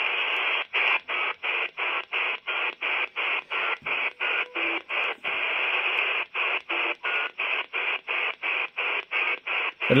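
Quansheng UV-K6 handheld radio scanning the 20-metre band on lower sideband, its speaker giving out steady receiver hiss. The hiss breaks off for a moment about three times a second as the scan steps from one frequency to the next.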